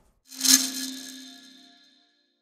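Logo sting sound effect: a quick swell into a single hit about half a second in, followed by a ringing tone that fades away over about a second and a half.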